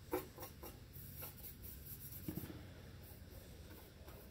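Faint handling sounds of a hand rubbing and sliding a license plate across a plywood board, with a sharp tap just after the start and a softer knock a little past halfway.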